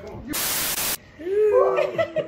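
A short burst of even, static-like hiss, about two-thirds of a second long, that starts and cuts off abruptly, followed by a voice.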